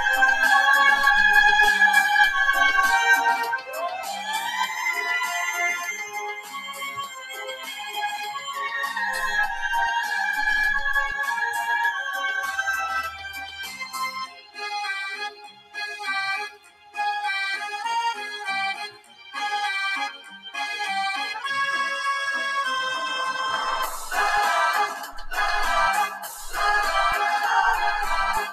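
Background music on an electronic keyboard with an organ sound: held notes at first, a rising glide about four seconds in, then short choppy notes from about halfway.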